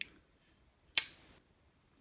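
One sharp metallic click about a second in, with a short ringing tail: the blade of a Zero Tolerance 0055 titanium framelock flipper folding shut and snapping into its closed detent.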